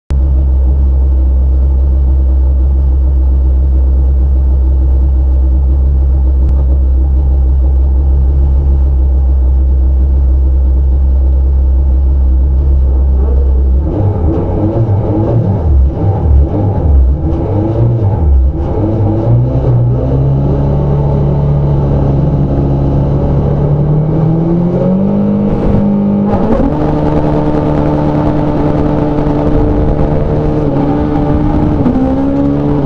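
Rallycross car engine heard from inside the cabin: a steady low drone on the start line for about the first 14 seconds, then about five seconds of erratic revving in bursts. After that the car pulls away, revs rising through the gears with shifts near the end.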